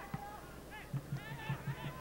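Low stadium broadcast ambience with a faint voice talking in the background, quieter than the commentary around it.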